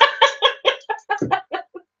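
A woman laughing in a run of short bursts, about five a second, fading out towards the end.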